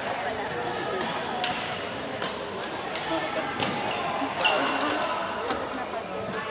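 Badminton rackets striking a shuttlecock in a rally, sharp hits about once a second, with short high squeaks of court shoes on the hall floor and voices in a large, echoing sports hall.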